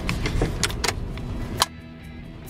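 Road rumble inside a moving car, with several sharp clicks and knocks as a handheld camera is grabbed and switched off. The sound cuts out suddenly about a second and a half in.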